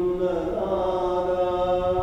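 Liturgical chant sung in long, steady held notes, with a change of note about half a second in.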